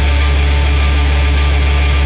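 Nu metal recording: distorted electric guitars and bass playing a loud, dense, steady passage with a heavy low end.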